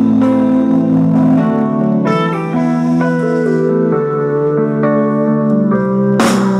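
Live band's instrumental passage: electric guitars holding sustained notes with slow chord changes, no drums.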